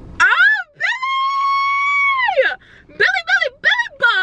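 A young woman's high-pitched excited squeal, rising and then held for about two seconds, followed after a short pause by a few quick up-and-down yelps.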